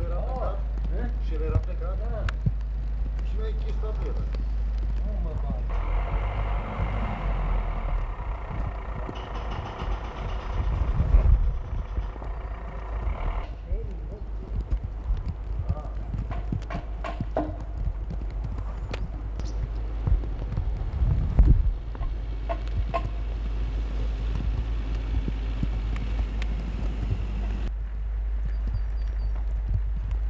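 Outdoor ambience: a steady low rumble with scattered clicks and knocks, and a louder stretch of several seconds with a steady humming tone. Two sharper knocks stand out, one in the middle stretch and one later on.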